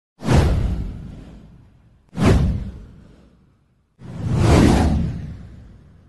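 Three whoosh sound effects of a title-card intro animation, about two seconds apart. The first two sweep in sharply and fade away; the third swells in more gradually and lingers longer before dying out.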